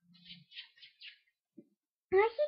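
Faint, high chirps, four quick ones in about the first second, in near silence.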